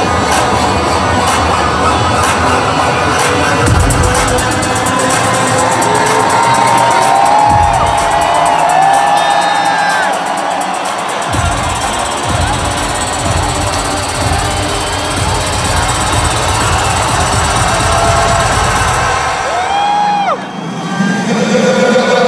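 Loud electronic dance music from a DJ set over an arena sound system, with a crowd cheering over it. The heavy bass cuts out and comes back several times, with sweeping tones over the top. About twenty seconds in the music thins out briefly, then returns louder and heavier.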